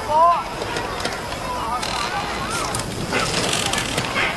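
A woman's voice ends a word at the start, then a steady outdoor background hiss fills the pause, with faint distant voice-like sounds in it.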